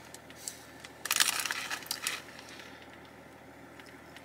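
Crunching of crisp potato sticks being chewed: a click or two, then a dense run of crunches about a second in that fades away.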